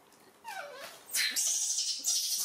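Baby macaque giving a short whimpering cry that falls in pitch, then a louder high hissing sound that starts about a second in and keeps going.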